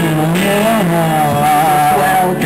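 Live rock band with electric guitars playing: a long wavering high note is held over a bass line that slides up and back down.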